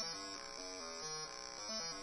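Synthesized bass line played back from the LMMS piano roll: a quiet run of short notes stepping up and down several times a second. The notes have just been moved around, so the line no longer plays as the demo song was written.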